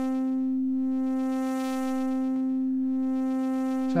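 Software synthesizer playing one held note: a sine-wave oscillator reshaped by a time-shift waveform modifier into a buzzy tone with many overtones. Its brightness dips and comes back about twice.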